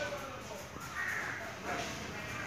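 A bird cawing once, about a second in, over faint background voices.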